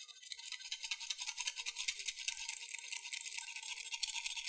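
Tea whisk rapidly frothing matcha in a ceramic bowl: a fast, even brushing rhythm of many short strokes a second.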